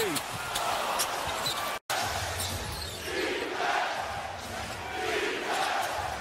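Basketball arena crowd noise with a ball bouncing on the hardwood court during play. The sound cuts out for a split second a little under two seconds in, at an edit.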